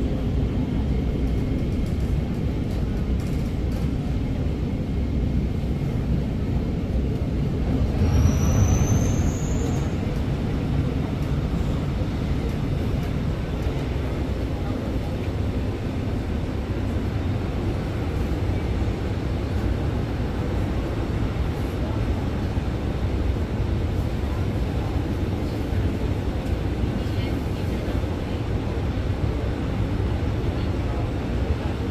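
Cabin noise of an Alstom MOVIA R151 metro train running on the East-West Line and drawing into a station: a steady low rumble, swelling briefly about eight seconds in with a short rising high-pitched squeal.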